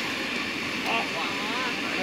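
Cotton candy machine's spinning head whirring steadily as the sugar floss is spun.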